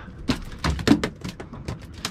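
A ladyfish flopping and slapping on a fiberglass boat deck: a run of irregular knocks, several a second.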